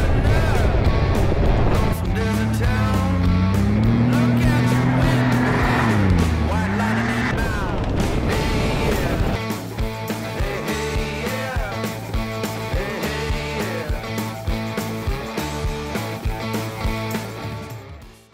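Can-Am Maverick X3 side-by-side's turbocharged three-cylinder engine revving up and down as it pulls away, mixed with background music. From about halfway on, music with a steady beat carries alone.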